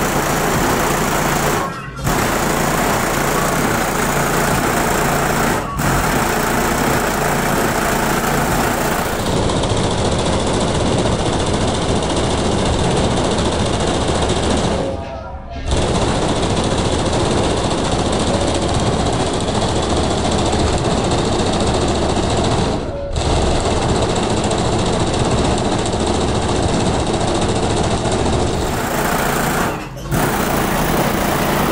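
A Lincoln Town Car's trunk sound system playing bass-heavy music very loud, taken up close to the car body so that it comes through harsh and buzzy, with a few brief dips.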